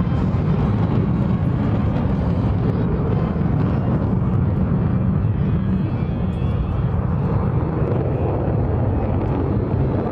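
A formation of F-16 fighter jets flying over: steady, unbroken jet engine noise, heaviest in the low end.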